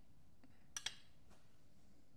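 Two light clicks close together a little under a second in, thin pressed sheet-metal squares tapping together as they are handled; otherwise quiet room tone.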